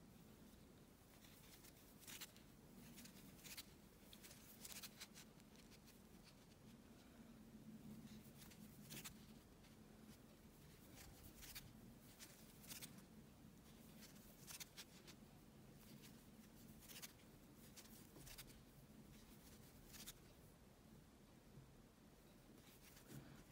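Near silence with faint, scattered soft ticks and rustles of a metal crochet hook working cotton yarn in single crochet, over a faint steady low hum.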